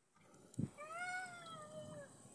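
A low thump about half a second in, then a single high, drawn-out cry lasting just over a second that rises slightly and then falls in pitch.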